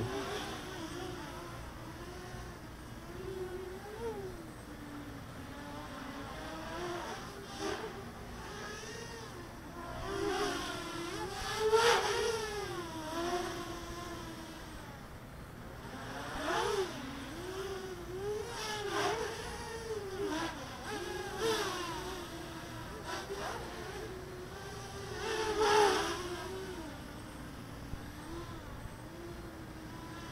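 EMAX Nighthawk Pro 280 racing quadcopter flying overhead, its 2204 motors and DAL 6040 props giving a buzzing whine that rises and falls in pitch with the throttle, swelling louder on throttle punches a little before the middle and again near the end.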